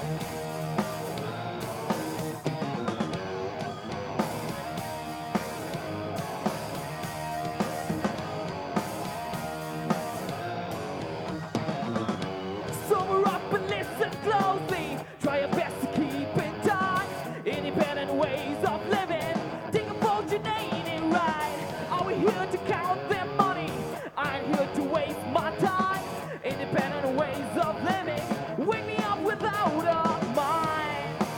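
Live rock band playing: electric guitar, keyboard and drums in an instrumental passage, then a male lead vocal comes in about twelve seconds in and carries on over the band.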